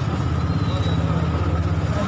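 A vehicle engine running steadily close by: a low rumble with a rapid, even pulse, over the noise of a busy street.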